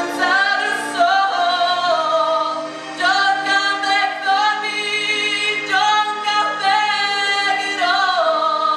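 A woman singing solo, holding long notes with vibrato and stepping between pitches.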